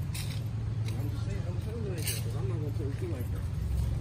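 Steady low hum of a city street with traffic, under a voice talking indistinctly for a couple of seconds in the middle. Two sharp clicks, one just after the start and one about two seconds in.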